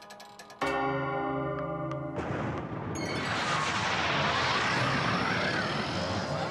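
Cartoon sound effects: a single bell-like strike that rings on, then, about two seconds in, a loud rushing, blast-like noise that holds until near the end.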